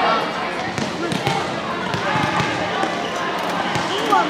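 Indistinct chatter of many girls' voices in a gym, with scattered sharp thuds of volleyballs being hit and bouncing on the hardwood floor.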